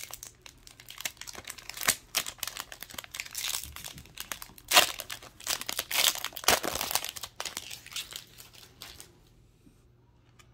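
Foil trading-card pack wrapper being torn open and crinkled by hand as the cards are pulled out, in irregular crackles that are loudest about halfway through and stop about nine seconds in.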